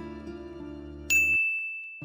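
Soft background music until about a second in, then a single bright ding that rings out and fades as the music cuts off. It is the correct-answer chime as the answer is revealed.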